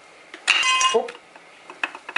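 One short metallic clink with a brief ring, about half a second in: the cast-aluminium oil pump of a VAZ front-wheel-drive engine seating onto the crankshaft nose as its drive engages.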